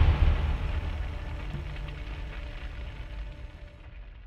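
The decaying tail of a deep cinematic boom hit on a title card: a low rumble that fades away steadily.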